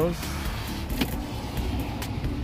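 Kia Sedona's power sliding door motor running steadily as the door closes, with a sharp click about a second in.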